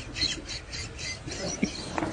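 A rapid run of short, high-pitched squawking chirps, about five or six a second, from an animal.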